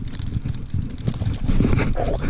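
Stiff, worn 1960s metal casting reel being cranked, its seizing gears grinding and clicking as they turn under strain. Wind buffets the microphone throughout.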